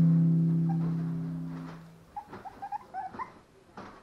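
An acoustic guitar chord rings out and fades away over the first two seconds, then a West Highland White Terrier puppy gives a quick run of faint, high squeaks and whimpers.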